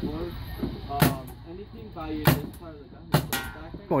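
Paintball marker firing three single shots, sharp pops about a second or so apart.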